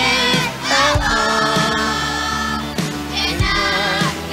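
Children's choir singing with instrumental accompaniment that has a bass line and a beat; the voices hold one long note for nearly two seconds in the middle.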